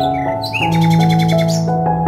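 Background music with long held notes, with bird chirps over it and a fast bird trill lasting about a second from about half a second in.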